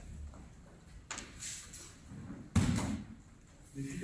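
A thrown aikido partner landing on the tatami mat in a breakfall: one heavy thud about two and a half seconds in.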